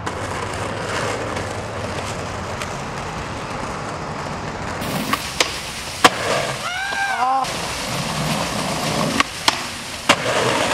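Skateboard wheels rolling on rough asphalt with a steady grinding noise, then sharp wooden clacks of the board popping and landing, several times in the second half. A short wavering pitched cry sounds about seven seconds in.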